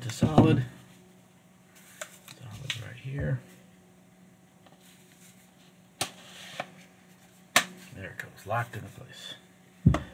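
Hands handling a telephoto lens and its plastic lens hood in a neoprene cover: a light click about six seconds in and a sharper knock about a second and a half later, with brief low murmured voice in between.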